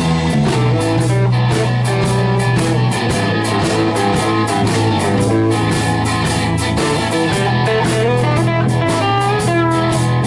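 Live blues-rock band playing with no vocals: electric guitars over a steady bass line and a drum kit keeping a regular beat.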